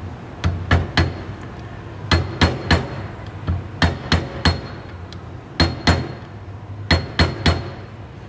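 Hammer tapping metal on metal to drive a new oil seal down into a gearbox bearing housing, pressing through the old bearing. There are about fourteen sharp taps in quick groups of two or three, each with a short high ring.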